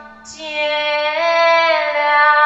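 A pop ballad in Burmese: after a brief lull a singer comes in on one long held note that steps up in pitch about a second in, over soft backing music.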